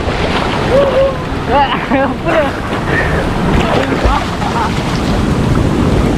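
Fast-flowing stream water rushing and splashing around a person sliding head-first through the current, steady throughout. Short shouted voice calls break in over the water several times.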